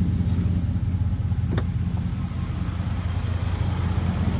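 Dodge Ram 1500's 5.7 Hemi V8 idling steadily with the air conditioning on. One sharp click about one and a half seconds in.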